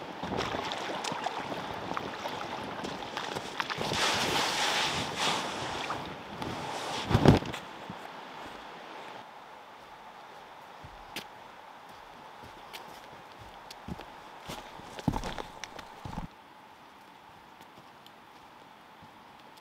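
Water swishing and splashing as an inflatable boat is hauled up a shallow river edge by a line, ending with a heavy thump about seven seconds in. After that come quieter, scattered footsteps on sand and then on a dirt trail.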